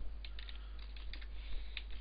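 Computer keyboard being typed on: a run of short, irregular key clicks, several a second.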